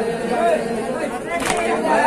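Male voices reciting a noha, a Shia lament, into microphones, with one chest-beating (matam) strike about one and a half seconds in.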